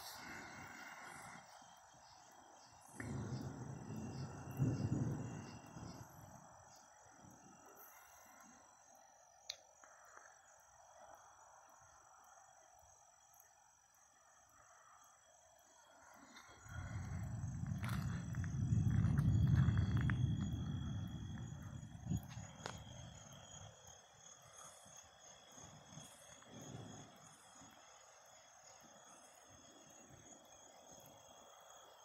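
Thunder rumbling: a short low roll about three seconds in, then a longer, louder roll that swells and fades over about six seconds past the middle. Steady high trilling of night insects runs underneath.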